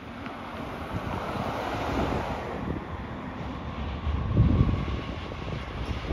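Wind buffeting the microphone over steady street-traffic noise, with a low rumble swelling briefly about four and a half seconds in.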